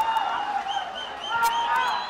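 Football crowd cheering and shouting after a goal by the home side, with individual raised voices heard over the general noise.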